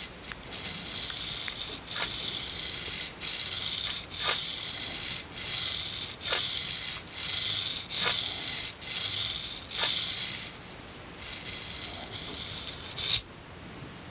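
3D printed recirculating ball carriage with 3/16-inch Delrin balls sliding back and forth along an aluminium extrusion rail. Each stroke gives a light, hissing rattle of the balls rolling and circulating, about one stroke a second. A knock comes about a second before the end, and the rattle then dies down.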